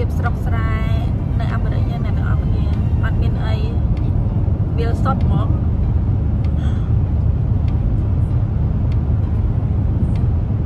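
Steady low rumble of road and engine noise heard from inside a moving car at highway speed. A voice speaks a few short phrases over it in the first half.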